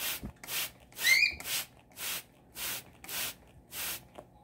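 Hand spray bottle misting in quick squirts, about two a second. About a second in, a cockatiel gives one short rising chirp.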